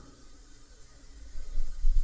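Quiet room tone with a faint steady hiss in a pause between spoken words. A low rumble rises near the end.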